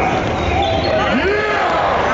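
A basketball being dribbled on a gym's hardwood floor, under indistinct shouting from spectators and players in the hall.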